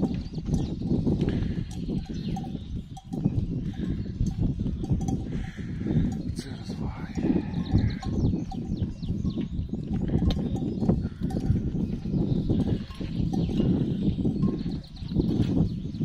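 Cows grazing right by the microphone: grass being torn and chewed in a steady run of crunching and ripping.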